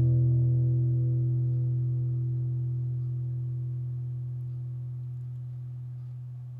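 A last low guitar note held and left to ring out at the end of a song, fading slowly and evenly.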